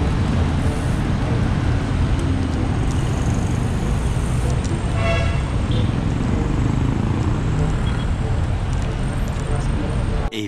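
Steady wind rush and road noise on a camera microphone riding along on a bicycle through street traffic. A short vehicle horn toot sounds about halfway through.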